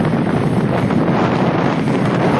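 Steady wind rush buffeting the microphone of a moving two-wheeler at road speed.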